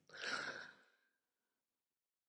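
A man's short audible breath close to the microphone, about half a second long, near the start.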